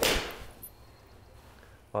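Steel Edel 54-degree V-grind wedge striking a golf ball off a hitting mat: one sharp strike right at the start, with a short ring-out after it.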